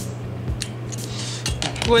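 A few light clicks and clinks of small plastic and metal model parts being handled as a motor unit is seated on a diecast model car body. A steady low hum runs underneath.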